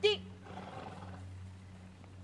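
A horse blowing out through its nostrils: one short, breathy exhale lasting under a second, just after a spoken cue.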